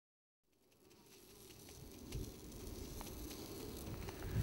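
Faint outdoor garden ambience fading in from silence, with an insect buzzing and a few faint ticks.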